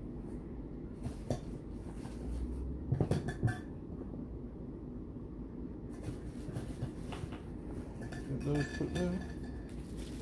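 Candle jars knocking and clinking as they are set down on a hard surface, with the loudest knocks about three seconds in.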